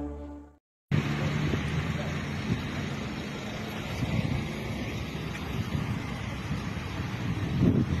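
A music intro fading out, then after a brief gap, outdoor street ambience: steady traffic noise with voices of people nearby.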